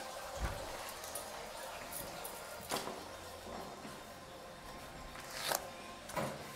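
Quiet room tone with a few brief clicks and knocks, about half a second in, near the middle and just before the end, as a door is opened by its handle and passed through.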